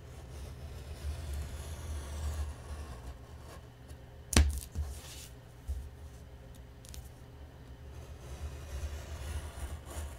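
Snap-off-blade craft knife scraping as it cuts along a paper edge over chipboard, with low handling noise from hands and paper on a cutting mat. A single sharp click about four and a half seconds in.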